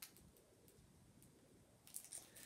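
Near silence: room tone, with a faint click at the start and another near the end, light handling of the package's paper contents.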